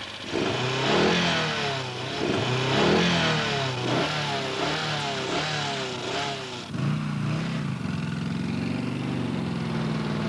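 Three-wheeler's 1000 cc Moto Guzzi engine revving hard, its note climbing and dropping again and again, then settling to a steadier, lower note about seven seconds in.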